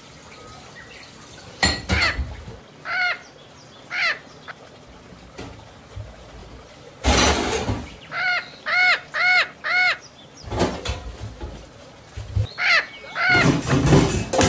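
A parrot squawking: a string of short, arched calls, one at a time at first, then four in quick succession about eight seconds in. There is a loud burst of noise about seven seconds in.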